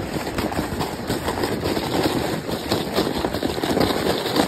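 Inflatable snow tube sliding over packed snow: a continuous rough rushing and scraping with many small crunches.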